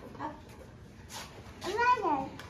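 A high-pitched voice near the end: one drawn-out syllable that rises and falls in pitch, like a word said in a sing-song way to a small child, with a shorter voiced sound early on.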